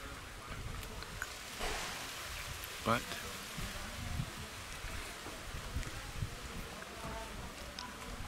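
Steady outdoor background noise with faint distant voices; a man says one word about three seconds in.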